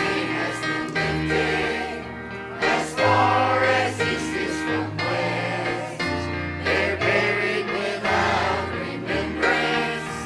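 Church choir singing a hymn together over an instrumental accompaniment, with held bass notes that change about once a second beneath the voices.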